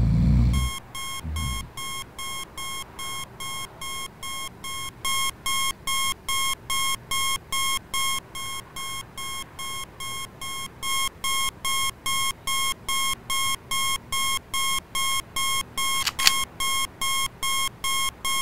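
Alarm clock beeping over and over, about two and a half short electronic beeps a second. It gets louder about five seconds in, softer for a few seconds, then louder again.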